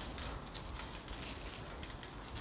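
Low outdoor background noise: a steady low rumble with faint, scattered light ticks.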